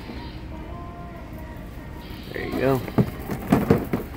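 Steady background noise of a store aisle with faint tones, then a few sharp knocks near the end.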